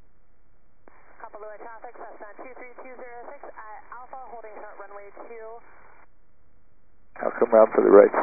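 Aviation radio voice traffic heard through a helicopter's intercom, thin and narrow-band like a radio: a fainter transmission runs for about five seconds, then a much louder radio call starts near the end.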